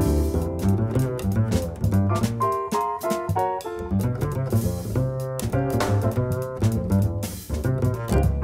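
Jazz recording: plucked double bass with piano and drum-kit cymbals. The bass drops out for about a second near the middle while a higher line carries on.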